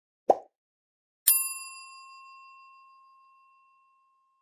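Sound effects of an animated subscribe button: a short pop as the cursor clicks it. About a second later comes a single bell ding that rings on and fades away over about two and a half seconds.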